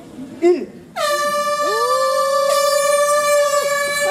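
A handheld air horn sounds the start of a mountain bike race: a loud, steady, single-pitched blast that begins abruptly about a second in and is held. Short shouts are heard just before it.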